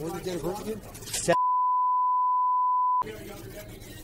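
A steady one-tone censor bleep, lasting about a second and a half and starting just over a second in, with all other sound cut out beneath it: a span of the audio redacted. Indistinct voices come before it, and store background sound follows it.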